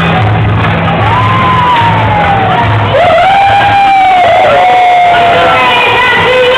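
Dance music with a steady bass beat that stops about halfway through, followed by a crowd cheering with long, sliding whoops and shouts.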